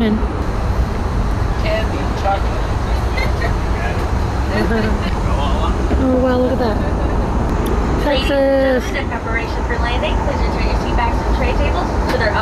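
Jet airliner cabin noise during descent: a steady loud low rumble of the engines and rushing air, with faint muffled voices in the cabin over it.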